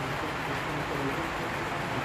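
O-gauge model freight cars rolling along three-rail track: a steady, even rumble.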